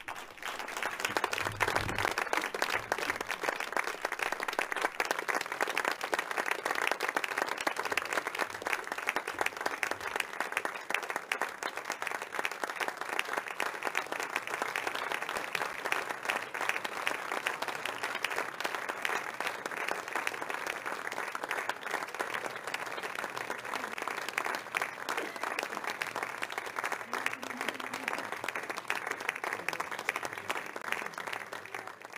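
A large seated audience applauding, a dense, steady clapping that holds its level throughout.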